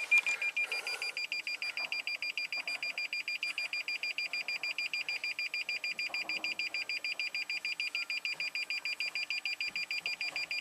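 A 2020 Toyota Tundra's parking-aid (clearance sonar) buzzer beeping rapidly and evenly, several high beeps a second without a break, with the truck in reverse. It is warning of an object close behind, a sign that the rear sensors are working while their wiring is being wiggled.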